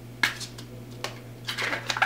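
Hard plastic phone case and the plastic dummy phone inside it clicking as fingers pry the insert out: one click near the start, then a quick run of clicks toward the end.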